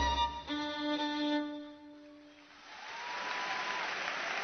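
The orchestra's strings hold the final note of a pop song, which fades out about two seconds in. The audience's applause then rises and carries on.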